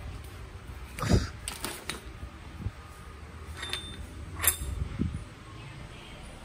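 Stainless steel flanges, bolts and nuts clinking and knocking against each other and the tile floor as they are handled, with a handful of sharp metallic knocks, the loudest about a second in and another a little past the middle.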